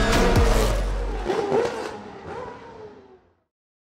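Closing logo sting of cinematic music and whooshing effects with a heavy bass rumble. The bass drops out about a second in and the rest fades away to silence a little past three seconds.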